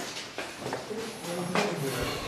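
Indistinct voices of a small group talking, with a few short knocks like footsteps on the cave walkway.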